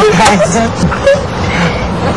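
People's voices in casual conversation, over a steady background noise.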